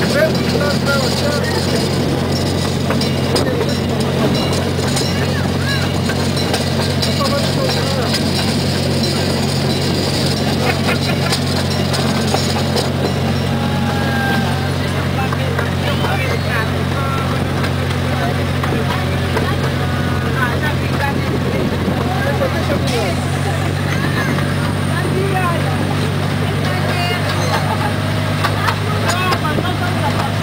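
Miniature C.P. Huntington-style park train running steadily, heard from an open passenger car: a constant low engine hum with the rumble of the ride, its note shifting slightly about two-thirds through. Riders' voices chatter in the background.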